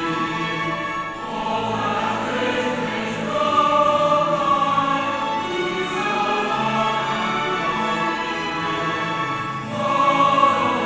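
A group of voices singing a hymn together, in held notes that change about every second, with a short break in the line about a second in.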